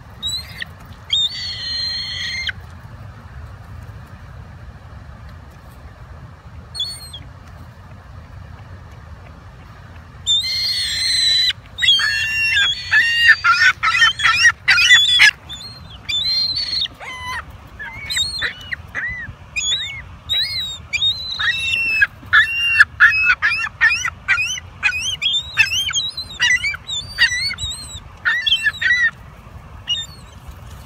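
Ring-billed gulls calling over food: one short call about a second in, then from about ten seconds in a long, dense run of short, high calls that rise and fall in pitch, several birds at once, ending shortly before the end.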